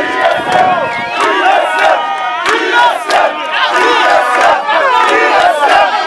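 A dense crowd of football fans shouting and cheering together at close range, many voices overlapping without a break, with a few sharp knocks and a steady held tone running underneath.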